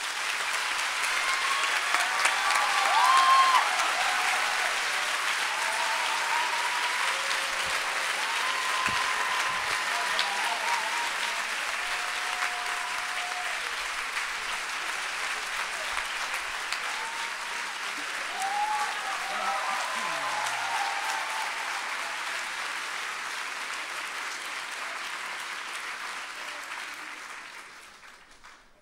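A large indoor audience applauding steadily, dying away near the end, with a few voices audible through it.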